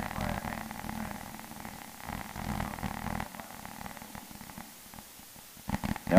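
Faint, muffled voice of a class member speaking away from the microphone, indistinct, fading out about three seconds in.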